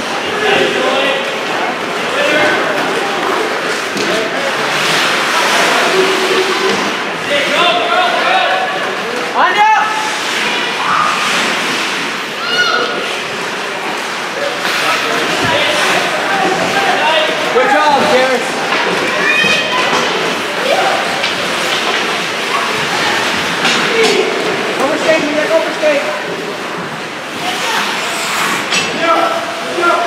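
Many voices calling and chattering at once in an echoing ice arena, with no single voice standing out, and a few sharp knocks, the clearest about ten seconds in and again about fifteen seconds in.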